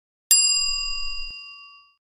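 Notification-bell sound effect: a single bright metallic ding that strikes about a third of a second in and rings out, fading over about a second and a half.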